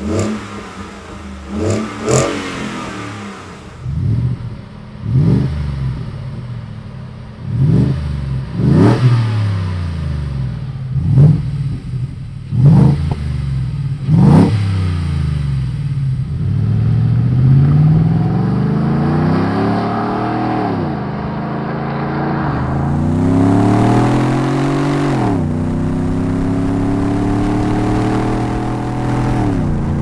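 Ford F-150's 5.0L Coyote V8 exhaust at a standstill, blipped through a run of quick sharp revs from idle, first on the stock exhaust and then on a Magnaflow MF Series cat-back with a single side exit. In the second half the truck accelerates under load: the pitch climbs slowly, falls twice at gear changes, then settles into a steady cruise.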